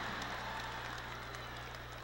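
Faint crowd noise from a large theatre audience, a soft applause-like hiss that slowly fades, over a low steady hum.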